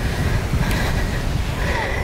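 Wind buffeting the microphone as a low rumble, over the steady wash of surf breaking on the beach.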